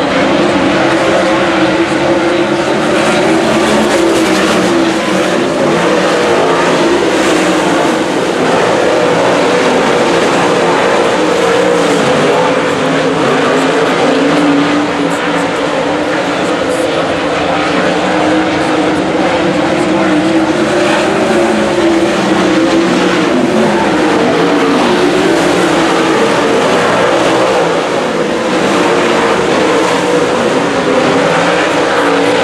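V8 dirt late model race cars running laps at racing speed, the pack's engines rising and falling in pitch as the cars accelerate down the straights and lift for the turns.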